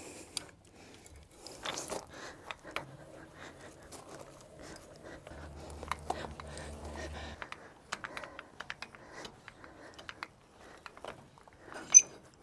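Scattered small metal clicks and clinks from handling a trailer's coupler and hitch hardware as the coupler latch is closed, with a faint low hum for about two seconds past the middle.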